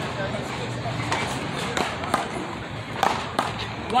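One-wall paddleball rally: about half a dozen sharp smacks at uneven spacing, as the solid paddles hit the rubber big ball and the ball strikes the concrete wall.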